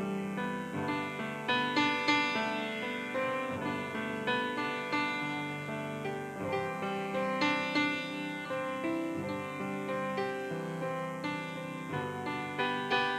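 Instrumental piano music, notes struck and left to ring.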